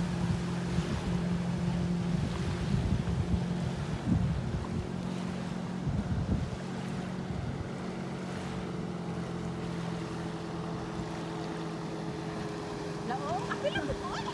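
Ski boat's inboard engine running with a steady low hum as it tows two water skiers across the lake, with wind noise on the microphone.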